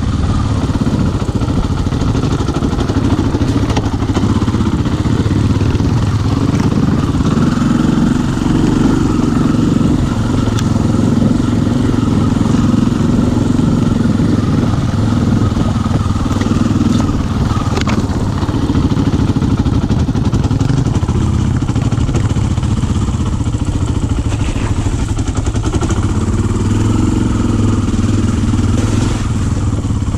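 Kawasaki KLX-230R dirt bike's single-cylinder four-stroke engine running at steady, moderate revs while riding, heard close up from the bike itself, with a few light knocks and rattles of the bike over the trail.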